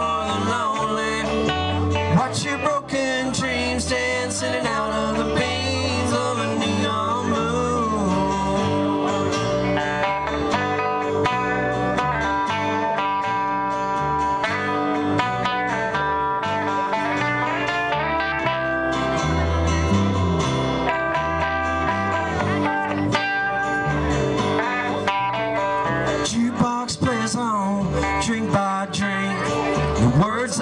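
Live country band playing an instrumental break on guitars: electric and acoustic guitars over a steady bass line, at an even level.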